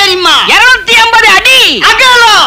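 A person's voice giving loud, rapid wailing cries, each rising and falling in pitch like a dog's yelp or whimper, about two a second.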